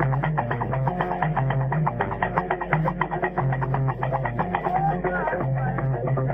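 Guembri (Gnawa three-string bass lute) played in a repeating low bass riff, over a quick, even, percussive clicking beat.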